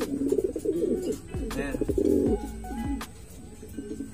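Racing pigeons cooing in a loft cage, loudest through the first two seconds and then dying down.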